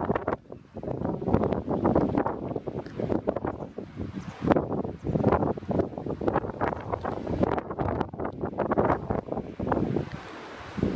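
Strong gusty wind buffeting the microphone, a rumbling noise that surges and drops every second or so. The strong wind is, the uploader guesses, from a passing typhoon.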